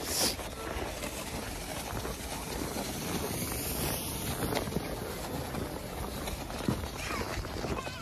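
Steady open-air rush on a phone microphone, with faint, distant shouts from people sledding down a snowy hill.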